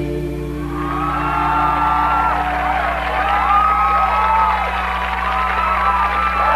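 A rock band's final chord rings out and fades over the first second or two, while a studio audience cheers and whoops, starting about a second in.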